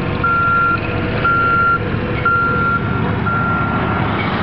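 Harley-Davidson V-twin motorcycle engine idling with a steady low rumble. Over it, an electronic beep of one pitch sounds once a second, each beep about half a second long.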